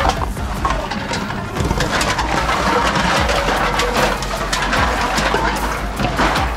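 Reverse vending machines taking in drink cans and bottles: a steady machine hum under rapid clatter and clinks as the containers are pushed in and drop through.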